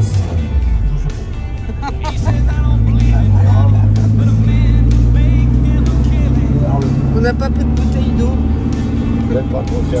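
Small vintage car's engine running while driving, heard from inside the cabin: a steady low drone whose pitch shifts a few times.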